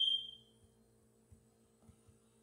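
A single high-pitched ping right at the start that fades away within about half a second, over a faint steady electrical hum.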